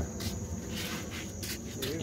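Night insects keep up a steady high-pitched chorus, with a few scattered knocks of footsteps on wooden boards.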